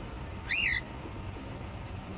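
A budgerigar gives one short chirp that rises and falls in pitch, about half a second in.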